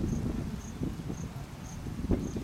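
An insect chirping in the background: short high chirps at an even pace of about two a second. Underneath is a louder low, uneven rumble of wind on the microphone.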